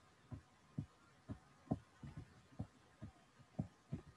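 Faint soft taps, about ten at an uneven pace, from short strokes being drawn on a digital slide with a pen input device.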